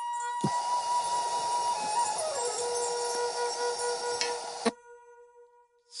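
Helium hissing out of a disposable helium tank's nozzle as it is inhaled from, steady for about four seconds and then cutting off suddenly. Under it, a held musical note steps down in pitch about two seconds in and lingers faintly after the hiss stops.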